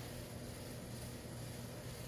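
Quiet background: a faint, steady low hum with a light hiss, with no distinct event.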